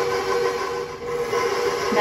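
Electric bowl-lift stand mixer running, its motor giving a steady hum with two held tones as the beater mixes a batter of butter, brown sugar and eggs. The sound dips briefly about halfway through, then picks up again.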